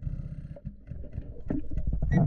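Muffled underwater rumble from a scuba diver's bubbles and movement, heard through a camera under water: a dense low churning with no clear tone.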